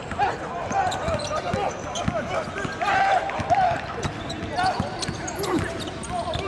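Basketballs bouncing on a hardwood court during practice: a steady run of sharp knocks, with short sneaker squeaks in between.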